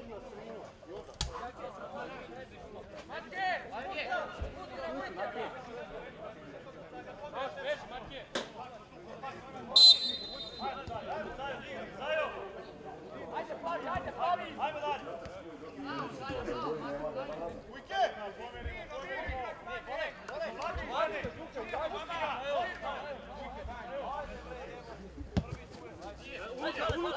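Players and spectators shouting and calling out across a football pitch, with a few sharp knocks of the ball being kicked. About ten seconds in, a short, shrill blast of the referee's whistle is the loudest sound.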